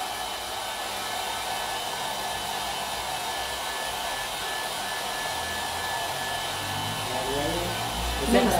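Handheld hair dryer blowing steadily on its cool setting, held at a distance to dry the crackle medium and fresh chalk paint so the paint cracks. It runs with an even rush of air and a faint steady motor whine.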